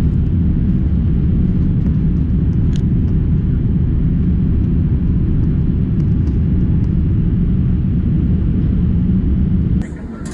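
Steady low roar of a jet airliner's cabin noise during the climb after takeoff, heard from a window seat. Just before the end it drops suddenly to a quieter cabin hum.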